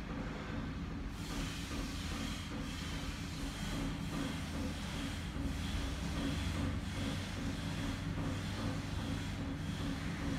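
A steady low mechanical hum with an even hiss over it, unchanging throughout.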